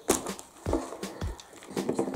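A hollow plastic surprise-capsule ball being pulled open: a sharp click as its two halves come apart right at the start, then several lighter plastic knocks and clicks as the pieces are handled.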